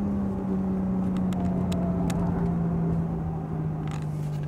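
BMW M3 Competition's twin-turbo inline-six heard from inside the cabin on track, its engine note sinking slowly and smoothly in pitch as the revs fall, over a steady low road rumble.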